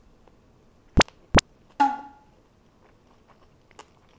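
White ceramic spoon knocking against a ceramic serving plate while scooping food: two sharp clinks about a second in, then a third clink with a brief ring.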